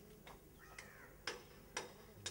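Sharp ticks or knocks, about two a second, with a pause in the first second before two more strike near the end.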